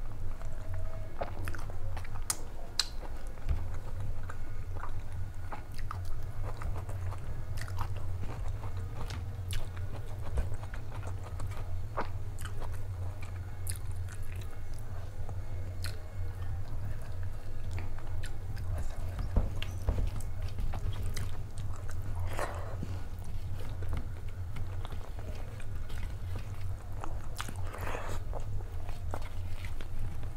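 Close-miked chewing and mouth sounds of a person eating rice and dal by hand, picked up by a lapel microphone. Scattered small clicks come from fingers working food on a steel plate, over a steady low hum.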